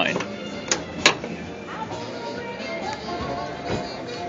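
Two sharp clicks about a second in as a Nissan Versa's hood is unlatched and raised, over steady background music.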